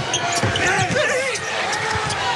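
Basketball bouncing on a hardwood arena court, a few low thuds, amid steady crowd noise and voices.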